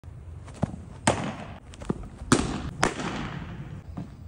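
Baseballs smacking into leather gloves: five sharp cracks over about two and a half seconds, the loudest about a second in and twice more near the middle, each echoing in a large indoor training hall.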